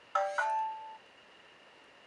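HP Veer phone playing a short two-note electronic chime from its speaker as it is powered off with the power button; the second note rings out and fades within about a second.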